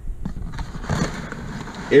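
Rustling handling noise as a sneaker and the camera are moved about, a hiss with no clear knocks.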